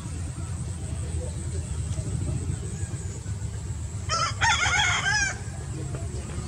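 A rooster crowing once, about four seconds in: one wavering call lasting a little over a second.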